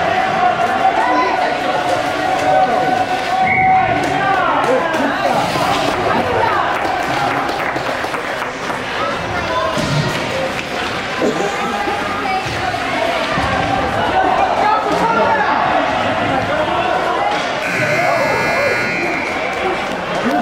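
Ice rink buzzer sounding a steady tone that cuts off about four seconds in, and a harsher buzz near the end, over continual voices and chatter in a large, echoing arena.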